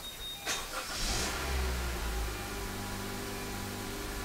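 2019 Honda HR-V's 1.8-litre four-cylinder engine being started: a short crank, then it catches about a second in with a brief flare of revs and settles to a steady idle.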